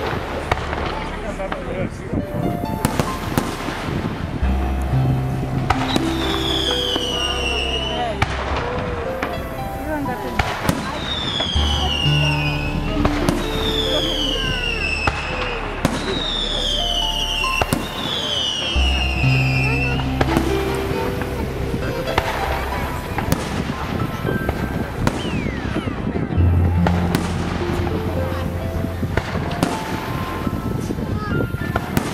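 Fireworks display: aerial shells bursting in repeated sharp bangs throughout, over loud music with held bass notes and a stepping melody. Four long, high falling whistles sound in the middle stretch.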